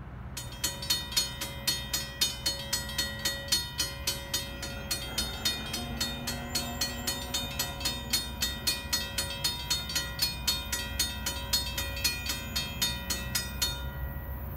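Railroad grade-crossing warning bell ringing in a steady series of strikes, about three a second. It starts just after the signals activate and stops near the end, once the gate arms are fully down.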